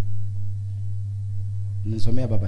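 Steady low electrical hum: one deep unchanging tone with a fainter overtone above it.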